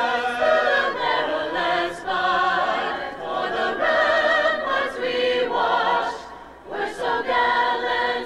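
High school choir of mixed boys' and girls' voices singing the national anthem in long held chords. The singing breaks for a short breath a little over six seconds in, then a new phrase begins.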